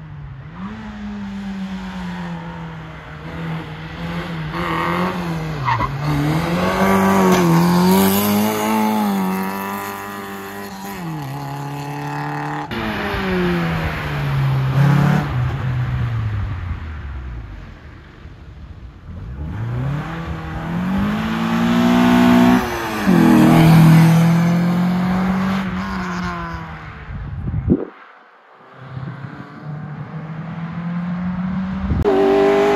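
A race car's engine revving hard and easing off again and again as it is driven through a tight cone slalom, its pitch climbing and falling with each burst of throttle and lift, and dropping away suddenly twice.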